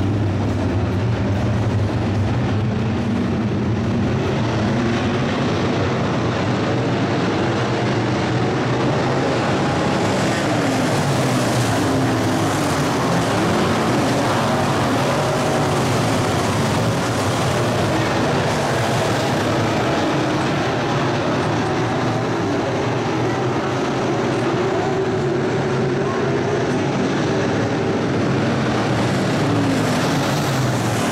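A field of B-Mod dirt-track race cars running their V8 engines at racing speed, a steady loud engine noise whose pitch keeps rising and falling as the cars accelerate off the turns and pass by.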